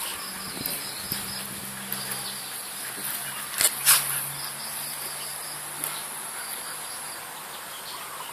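Insects chirring steadily at a high pitch, with two sharp clicks about a third of a second apart a little past the middle and a faint low hum underneath.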